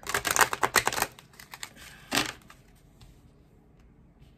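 A deck of tarot cards being riffle-shuffled: a rapid run of card flicks for about a second, then a few scattered ticks and one more short burst of card noise about two seconds in.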